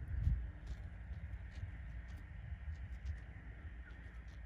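Katahdin sheep and lambs grazing close by, tearing and chewing grass: irregular crisp clicks over a low steady rumble.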